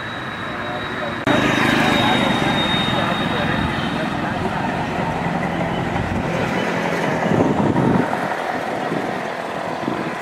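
Street noise with a motor vehicle running close by. It rises suddenly about a second in and stays loud until about eight seconds, over indistinct voices.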